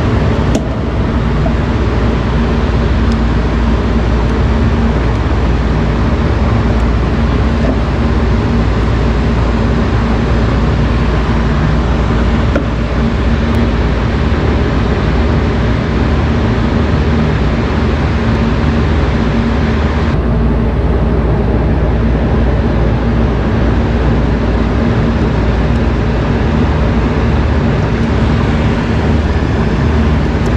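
A loud, steady mechanical drone with a low hum underneath. Its hiss softens about twenty seconds in.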